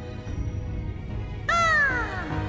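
A woman's high voice letting out a short meow-like cry that starts suddenly about a second and a half in and slides steeply down in pitch, over the low backing music of a song's accompaniment.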